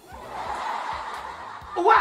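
A breathy, unpitched snicker lasting over a second, then near the end a sudden loud startled yell that rises in pitch.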